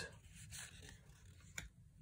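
Near silence with the faint rustle of 1987 Topps cardboard baseball cards sliding over one another in the hand, and one light click about one and a half seconds in.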